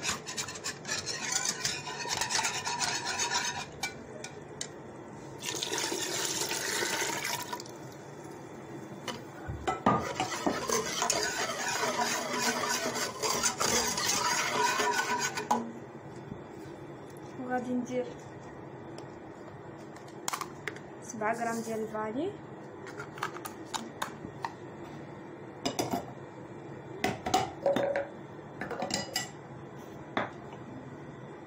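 Metal wire whisk beating a liquid mixture against the side of a bowl and then of a steel saucepan, busy stretches of rapid scraping and rattling, followed by scattered clinks and taps.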